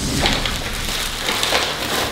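Crackly, crinkling rustle of a white padded mailer envelope being opened and a small box pulled out of it.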